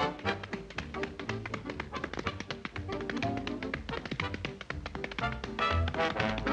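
Tap dancing: quick, rapid taps of hard shoes on a concrete floor over background music.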